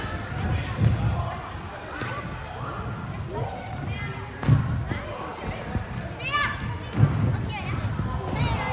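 Gymnasts' hands and feet thudding on a tumbling track during cartwheels and round-offs, with three heavier thuds about a second in, midway and near the end. Indistinct voices chatter throughout.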